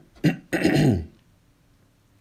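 A man clearing his throat: a short catch, then a longer rasp that falls in pitch, over about the first second.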